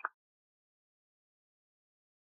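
Silence: the tail of a spoken word cuts off right at the start, then the sound track is completely silent.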